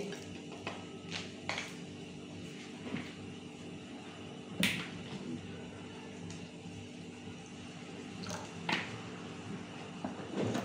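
Quiet room with a steady low hum, broken by a few light clicks and taps from handling things in the kitchen. The sharpest click comes a little under five seconds in, and two more come near the end.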